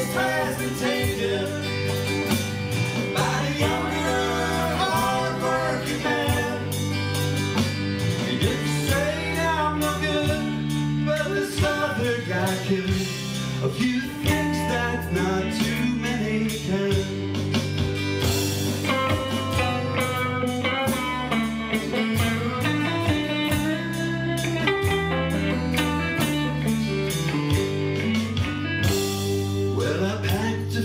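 Live alt-country band playing an instrumental break between verses: acoustic and electric guitars, bass guitar and keyboard over a steady rhythm, with a lead line of bending notes.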